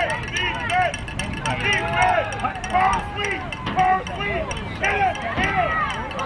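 Many voices from a football crowd and sideline shouting and cheering at once, short excited yells overlapping one another.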